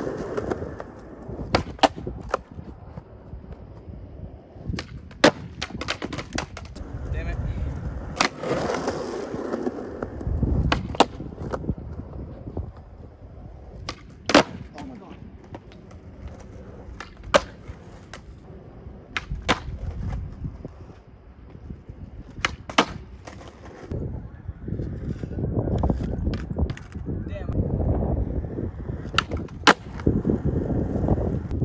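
Skateboard wheels rolling on concrete, broken every few seconds by sharp cracks of the tail popping and the board slapping down on landings as the skater ollies through a line of ledges and drops.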